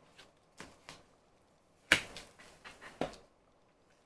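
Paper and cardboard album contents being handled and set down on a desk: a string of light taps and rustles, with one sharper tap about two seconds in.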